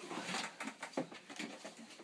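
Irregular scuffs, knocks and clothing rustle from a person climbing in through a window onto a kitchen sink counter.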